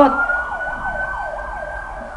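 Emergency vehicle siren: a fast repeating wail of about four to five sweeps a second over a steady high tone that rises slightly.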